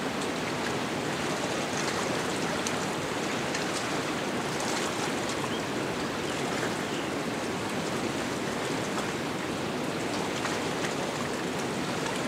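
Steady rushing of river water, an even unbroken noise.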